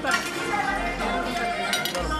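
Cutlery and dishes clinking at a dinner table, with a few sharp clinks near the end, over voices and music in the background.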